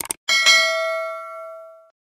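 Subscribe-animation sound effect: a quick double click, then a bright bell ding that rings and fades away over about a second and a half.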